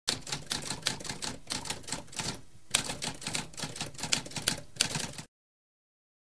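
Typewriter keys typing rapidly, a fast run of clacks with a short pause about two and a half seconds in, stopping abruptly at about five seconds.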